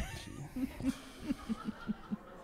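A sharp thump at the very start, then a man's quiet chuckles close to a handheld microphone: a string of short, uneven laughs.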